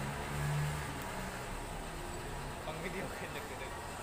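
Quiet workshop background: a low steady hum, strongest in the first second, with faint distant voices.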